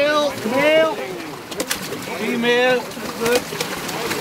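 About four short shouted calls from human voices, their pitch rising and falling, with water splashing and a few sharp knocks between them.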